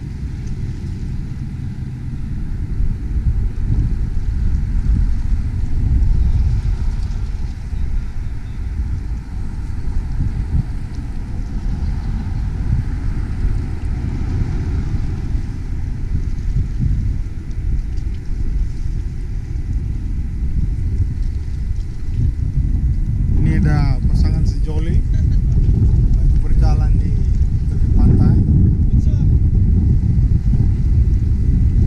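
Wind buffeting the microphone: a loud low rumble that swells and eases in gusts. Brief voices talk over it in the last quarter.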